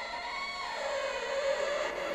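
String quartet (violins, viola and cello) playing sustained bowed notes in slow held chords; the harmony shifts a little under a second in, with a lower note coming in, and the sound grows slowly louder.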